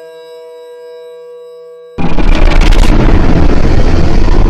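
An eerie drone of steady held tones, then about two seconds in a sudden, very loud blast of harsh distorted noise cuts in and carries on: a horror jump-scare sound effect.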